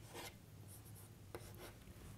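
Chalk writing on a blackboard, faintly scratching in a few short strokes.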